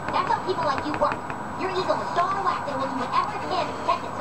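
Muffled background speech from a television, with the light scratching of a pencil stroking across the drawing.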